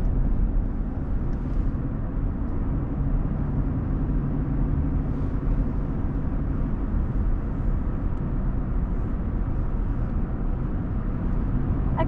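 Inside the cab of a 2020 Chevrolet Silverado pickup on the move: its 3.0-litre Duramax straight-six diesel and the tyres on the road make a steady low rumble.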